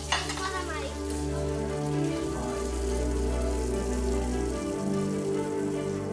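Background music of held notes that change every second or two, over a steady sizzle of food frying in a pan.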